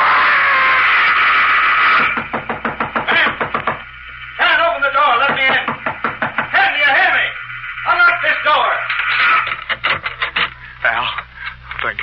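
A man's scream, held for about two seconds, then a rapid run of loud knocks pounding on a door.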